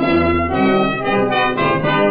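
Brass-led dance orchestra playing the instrumental introduction of a Brazilian carnival marcha, from a 1931 recording.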